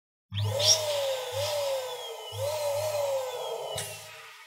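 Electric balloon pump's motor humming in three or four bursts as it blows up a balloon, with a tone that keeps rising and falling above it and a sharp click near the end.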